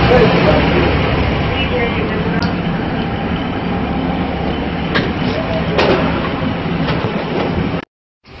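Airport shuttle bus running, heard from inside the cabin: a steady engine hum and road noise, with a couple of sharp knocks about five and six seconds in. The sound cuts off suddenly just before the end.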